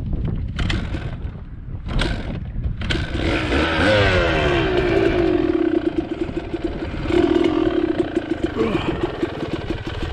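Dirt bike engine revving up about three seconds in, its pitch climbing and then held high and fairly steady while the bike pushes through tall grass. Knocks and rattles from the bike come before the engine picks up.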